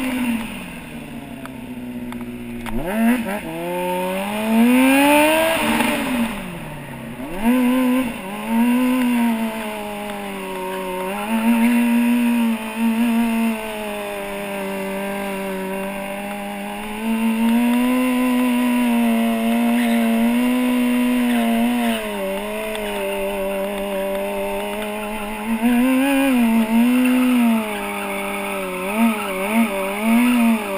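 Stunt motorcycle engine revving, heard close from a camera mounted on the bike. About five seconds in it sweeps up and back down, then it is held at a steady high pitch for long stretches, broken by repeated short dips and blips of the throttle.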